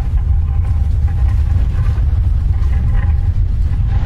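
Loud, steady low rumble of a logo-intro sound effect, with a faint thin tone over it.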